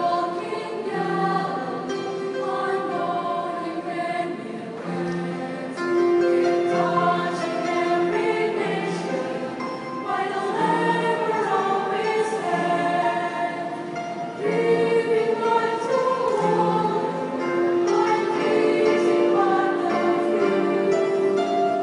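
A choir singing, holding long notes in harmony that change about every second.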